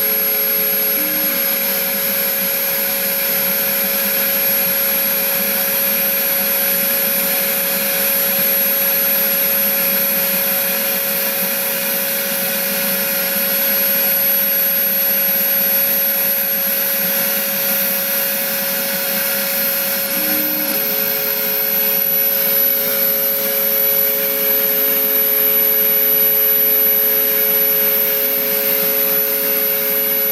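LPKF 93s PCB milling machine routing out a circuit board's outline with a 2 mm contour router, its spindle and dust extraction giving a loud, steady whine. One of its hums stops about a second in and comes back about twenty seconds in, each time with a short lower blip.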